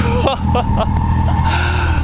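A car engine idling steadily at close range, a constant low hum with no revving.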